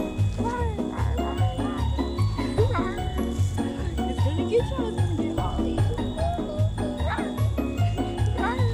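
Background music with a steady bass beat and pitched sounds gliding up and down over it.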